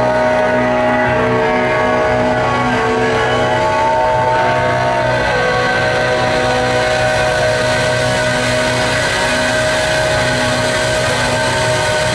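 Live rock band holding a long sustained closing chord: electric guitars ring out with a few slow, curving slide-guitar glides over a steady roll on drums and cymbals.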